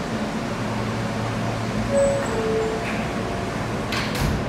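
R160A subway car's two-note descending door chime sounding about two seconds in, the signal that the doors are about to close, followed near the end by the doors sliding shut with a thud. A steady ventilation hum runs underneath.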